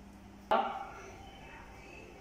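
A single sharp metallic clank about half a second in, with a ringing that dies away over about a second: a metal non-stick frying pan being set down on the kitchen counter.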